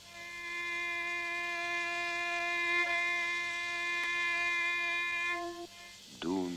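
A bowed string instrument holding one long, steady note with a thin, buzzing tone and no vibrato. There is a slight break about halfway through, and the note cuts off shortly before the end.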